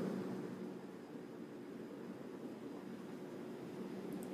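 Faint steady hiss with a low hum underneath, easing slightly about a second in.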